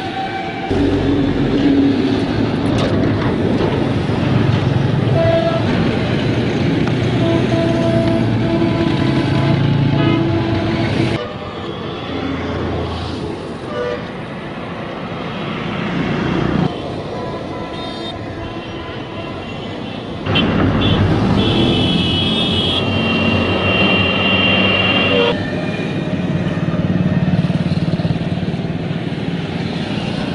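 Loud road-traffic noise with vehicle horns sounding now and then, changing abruptly several times.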